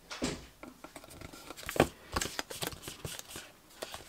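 Small card box and pieces of patterned paper being handled and fitted together by hand: irregular rustling of card and paper with scattered light taps and clicks, the sharpest one about two seconds in.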